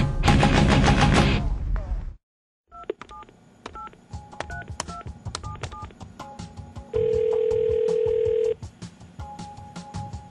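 Heavy electric-guitar music fades out over the first two seconds. After a brief silence comes a run of clicks and short electronic beeps at changing pitches, like a telephone keypad being dialed. About seven seconds in, a steady tone is held for about a second and a half, and a shorter beep follows near the end.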